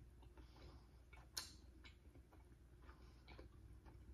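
Near silence: room tone with a few faint clicks, one sharper click about a second and a half in.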